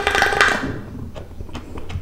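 Slurping the last of a Monster energy drink up a looped glass straw, a noisy gurgling suck of air and liquid that stops under a second in. Faint scattered clicks follow.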